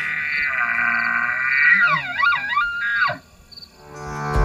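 Bull elk bugling: one long, high call with many overtones that breaks into several quick up-and-down swoops about two seconds in, and cuts off about three seconds in.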